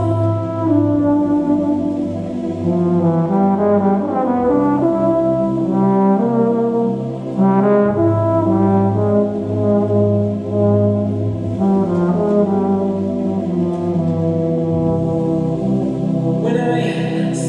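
Euphonium playing a slow melody of changing notes, with a low sustained note held underneath for long stretches.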